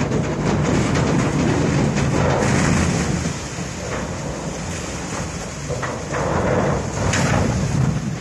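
A truckload of harvested sugarcane sliding out of a raised tipping bin and tumbling down through a steel loading frame into rail cane cars: a continuous rumbling clatter of falling stalks with sharp cracks mixed in. It is loudest for the first few seconds, eases a little in the middle and swells again near the end.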